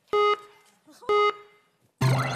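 Two short electronic countdown beeps about a second apart, each the same mid pitch: the last counts of a countdown cueing a song to be played.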